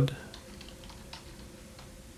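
Faint typing on a computer keyboard: a few scattered key clicks.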